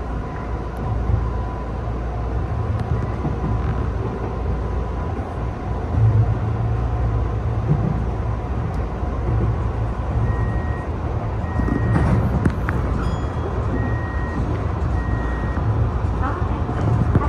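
Tokyu new 5000 series electric train running at speed, heard from inside the driver's cab: a steady low rumble of wheels and running gear on the rails, a little louder from about six seconds in, with a few sharp clicks and brief high tones in the second half.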